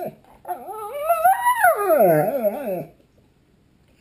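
A large dog giving one long, wavering howl that rises in pitch and then slides down low, lasting about two and a half seconds.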